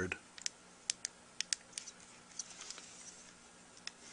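Small stainless steel tool ticking and scraping lightly against a hard rubber tenor sax mouthpiece while smoothing epoxy putty in its baffle: a scattering of faint, sharp, irregular ticks.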